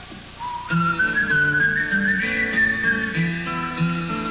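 Live band instrumental break: a high whistled melody line gliding between notes over picked acoustic guitar and bass, coming in loud about a second in.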